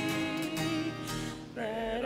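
Church choir singing a communion hymn with guitar accompaniment. A held phrase fades about a second and a half in, and the next phrase starts just after.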